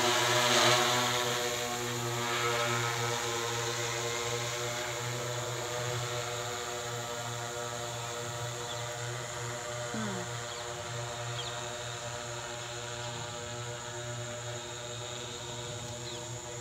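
Agricultural spraying drone (multirotor) flying, its propellers making a steady hum of several pitches that slowly fades as it moves away.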